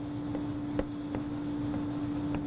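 Chalk writing on a blackboard: faint scratching strokes with several short taps as characters are written, over a steady low hum.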